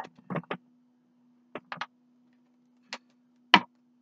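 Short, sharp taps and clicks of a card deck being handled on a wooden table, about six in all, the loudest near the end, over a faint steady hum.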